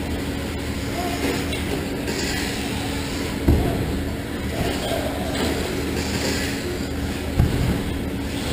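Electric RC short-course trucks (Traxxas Slash) racing on a dirt track: a steady mix of motor whine and tyre noise over a constant hum. Two dull thumps come through, one about three and a half seconds in and one near the end.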